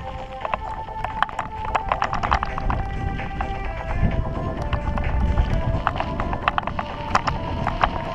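Bicycle rattling over a rough dirt track: rapid, irregular clicks and knocks from the frame and parts, with a low rumble of tyres and wind that swells in the middle.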